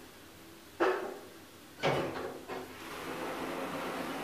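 KONE elevator car arriving at a floor: a clunk about a second in, then a second clunk with a falling low tone as the sliding car doors begin to open, followed by a steady rushing noise while the doors open.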